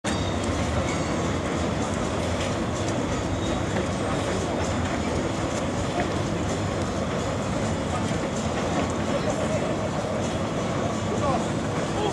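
Tobu Railway train running across a steel truss bridge: a steady, continuous rumble of wheels on the bridge, with voices in the background.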